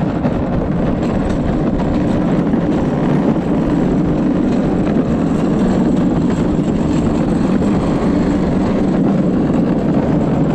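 Wheels of a gravity luge cart rolling down a concrete track, a steady low rumble.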